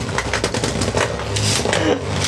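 Beyblade Burst spinning tops whirring, scraping and clattering against each other and the walls of a plastic stadium, a dense run of rapid clicks and knocks.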